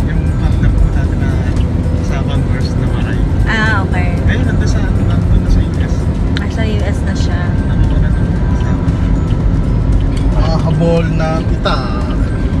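Steady low rumble of a car heard from inside the cabin while driving, with a few brief voices and some music over it.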